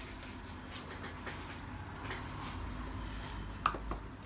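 Low steady room hum with faint handling of kitchen utensils and dishes, and a couple of small sharp knocks shortly before the end as things are set down on the table.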